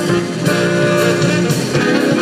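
Small jazz combo playing live, with guitar to the fore over a steady cymbal and drum beat.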